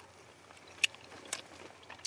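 A quiet background with three short, sharp clicks about half a second apart, from tableware being handled at the table.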